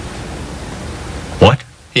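A steady, even background hiss in the pause between lines of dialogue, broken about one and a half seconds in by a brief voice sound; speech starts again right at the end.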